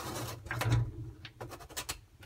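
Plastic filter of a Miele dishwasher being twisted back into its sump by hand: a scraping rub, then a few light clicks as it seats.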